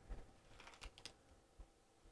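Near silence, with a few faint clicks and taps from handling a carded jewelry pendant and its packaging.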